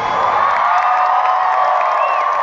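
Large concert crowd cheering and screaming, many high voices held together, as the band's music dies away in the first moments.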